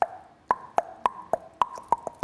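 Mouth clicks imitating a ping-pong ball being hit back and forth: a quick, even series of short pops that alternate between a higher and a lower pitch, about three to four a second. They start about half a second in.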